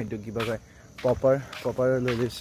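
A man's voice in three short phrases.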